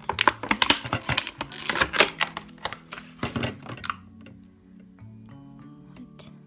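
Clear plastic packaging crinkling and crackling as a toy is pulled out of it, dense rustling for about four seconds that then stops. Soft background music continues underneath.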